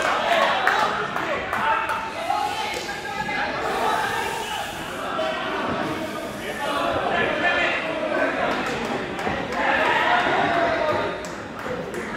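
Several men's voices talking and calling out across a large indoor sports hall, with a few sharp knocks near the end.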